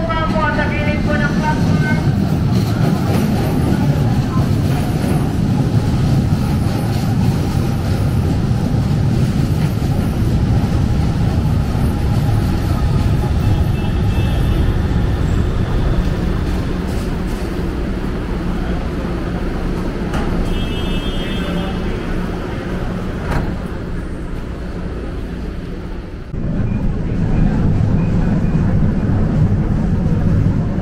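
An LRT-1 light rail train pulls into an elevated station with a steady heavy rumble of wheels on rail, its traction motors whining up and down in pitch as it comes in. Two short runs of high beeps sound partway through, like the train's door chimes. Near the end the rumble turns to the running noise heard inside the moving car.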